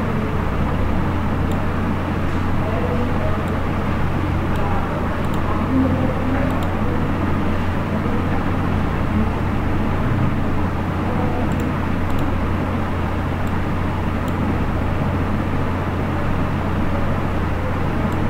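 Steady background noise with a constant low hum, and occasional faint ticks.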